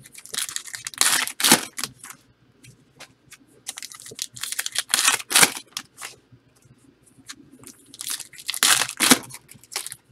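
Foil wrappers of Panini Contenders football card packs being torn open and crinkled by hand, in three loud bursts of tearing and rustling: about a second in, in the middle, and near the end.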